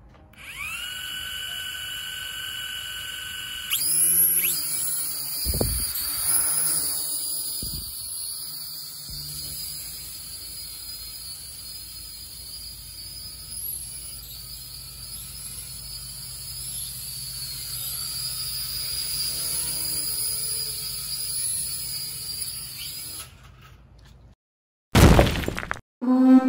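Holy Stone F183W toy quadcopter's motors whining as they spin up. About four seconds in they rise in pitch and level as it lifts off, with two sharp knocks soon after. The high whine then wavers on as it flies away, until it cuts off suddenly near the end and a short whoosh follows.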